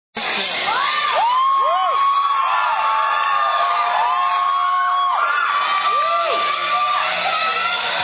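Audience cheering and screaming: many high voices overlap in whoops and long held shrieks.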